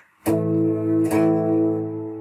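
An A power chord picked on strings five, four and three of a Les Paul-style electric guitar. It is struck twice, about a second apart, and each time left to ring, fading toward the end.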